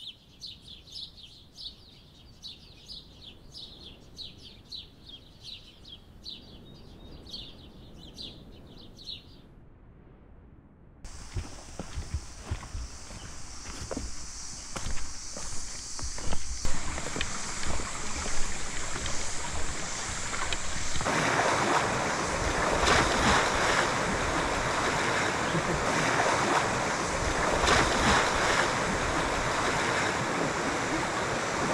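High chirps repeating about twice a second over quiet jungle ambience. After a break come footsteps on the forest floor, then the rushing of a rocky river, which grows loud and steady and is the loudest sound in the last third.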